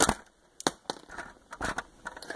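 Plastic Lego pieces of a camper van model clicking and knocking as they are handled, a few separate sharp clicks with a small cluster near the end.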